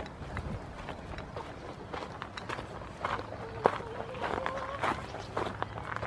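Footsteps on dry paddock dirt, a run of short uneven taps and knocks. A held, pitched vocal sound lasts about a second and a half a little after the middle.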